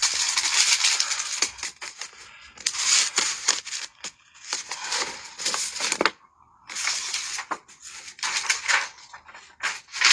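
Irregular bursts of rustling and crinkling, as of things being handled, broken by a short pause about six seconds in.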